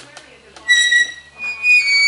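Metal-on-metal squeal from the pivot of a hanging tipping pot as it is tilted: two high, whistle-like squeaks, the second a little higher in pitch.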